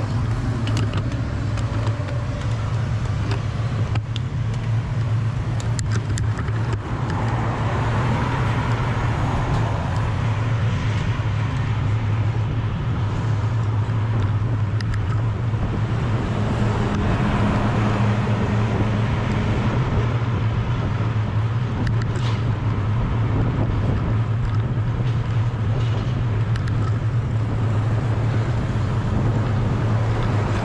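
Steady wind rushing and rumbling over the bike-mounted camera's microphone while cycling along at speed, mixed with road noise.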